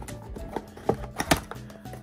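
A few sharp clicks and crinkles of a foil Pokémon booster pack being handled, loudest in the second half, over faint background music.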